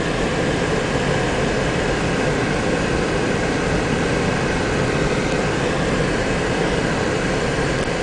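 Steady driving noise heard inside a car's cabin while it travels along a paved highway: tyres on asphalt, engine and wind, running evenly with no distinct events.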